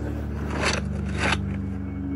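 A scratchy scraping and rustling noise lasting about a second, over a steady low hum.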